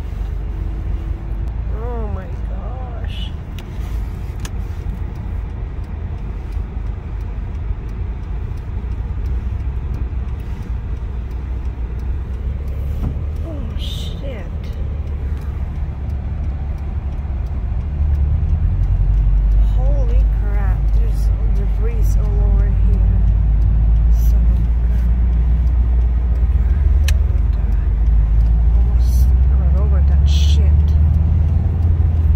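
Car cabin noise while driving on a highway: a steady low rumble of road and engine noise that grows louder about two-thirds of the way in.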